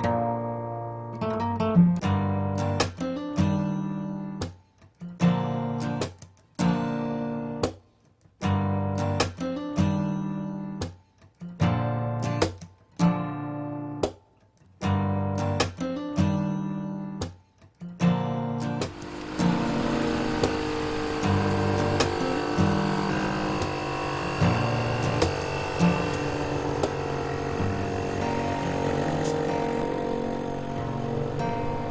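Background music with acoustic guitar: chords strummed in short stop-start bursts with brief silences between them, then about two-thirds of the way in a fuller, continuous arrangement takes over.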